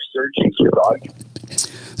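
Speech that ends within the first second, followed by about a second of quiet breathy hiss close to the microphone.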